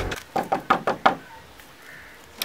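Knocking on a wooden door: about five quick raps in under a second.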